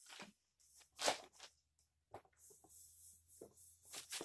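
Scattered light clicks and knocks from the tubular legs and braces of a backdrop support stand as its tripod base is spread open, the sharpest knock about a second in.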